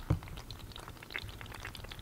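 Live blue crab bubbling at the mouth: a faint crackling fizz of many tiny scattered pops. A brief low thump comes just after the start.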